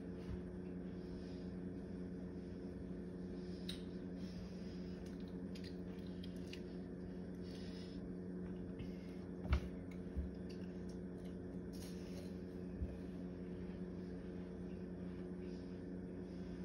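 A steady low hum with a few faint clicks and knocks; the loudest knock comes about nine and a half seconds in.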